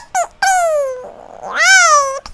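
A young girl's voice in two long, high-pitched, drawn-out calls: the first falls in pitch, and after a short breathy gap the second rises and falls again.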